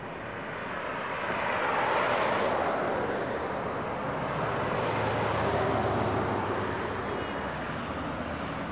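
Cars passing on a city street, one after another. The tyre and engine noise swells about two seconds in and falls in pitch as the car goes by, then a second car rises and passes around five to six seconds in.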